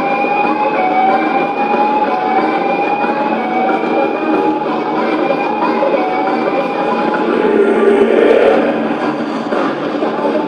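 Live concert sound: dense crowd-and-stage noise with a clear electronic-sounding tone that rises slowly and starts again about once a second. Near the end it swells into a louder, fuller mid-range sound.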